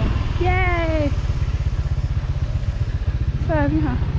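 Riding on a motorbike: a steady low rumble of wind buffeting the microphone over the running engine. A voice calls out briefly twice, about half a second in and near the end.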